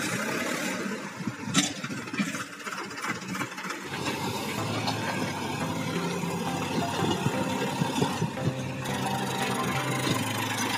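Sonalika farm tractor's diesel engine running. For the first few seconds the sound is a rough clatter with scattered knocks; from about four seconds in it settles into a steady engine hum.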